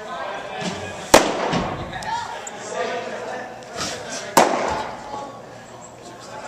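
Two sharp pops of a pitched baseball smacking into a catcher's mitt, one about a second in and another a little past four seconds.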